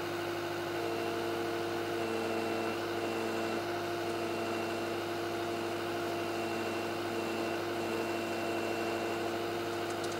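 Heavy equipment engine running steadily at a constant speed, with a higher whine that switches on and off every second or so.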